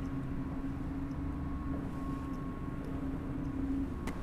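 Steady low hum with a faint held tone, unchanging throughout: indoor background noise.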